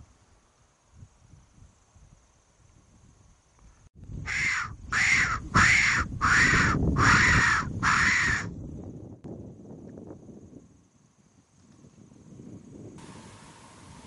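A hand-blown predator call (fox whistle) giving six loud squealing calls about 0.7 s apart, a distress cry meant to draw a predator in, over a low rumble.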